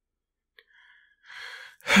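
A man's sigh. It opens with a small mouth click and a faint breath in, grows into a louder breathy rush, and turns voiced just at the end.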